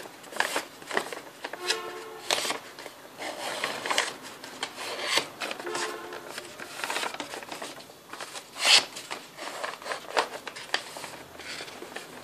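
Paper gift bag being folded and creased by hand: irregular rustling and crinkling of stiff paper, with the loudest crackle about nine seconds in. Two brief faint pitched sounds come around two and six seconds in.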